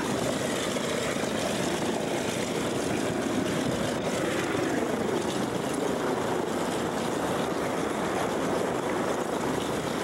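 Steady drone of a propeller aircraft's engine, running without a break.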